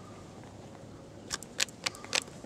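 Faint steady hiss, then a handful of short, sharp clicks and scuffs in the last second or so, from a person closing in on a skunk and taking hold of the plastic cup stuck on its head.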